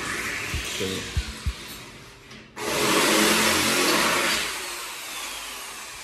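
Electric drill boring installation holes for a door frame into the wall, running in two stretches: it fades and cuts out about two and a half seconds in, then starts again loud and slowly dies down. A few low knocks sound in the first two seconds.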